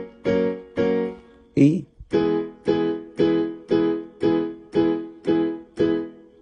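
Electronic keyboard on a piano voice playing full major chords, the same chord in both hands, struck repeatedly about twice a second as a practice exercise. The F-sharp major chord repeats, then after a short break near two seconds in, the E major chord repeats.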